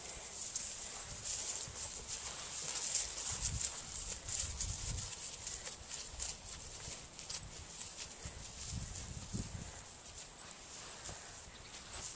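A horse walking on grass, its hooves landing in soft, dull thuds, with light clicks and rustle.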